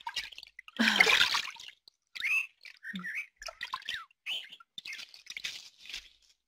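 Swimming-pool water splashing as a swimmer moves at the edge: a louder splash about a second in, then scattered light splashes and drips.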